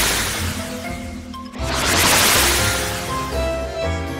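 Background music with a magical transition sound effect: two swelling, fading rushes of noise, the first peaking at the start and the second about two seconds in.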